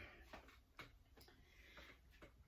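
Near silence: room tone with a few faint ticks about half a second apart.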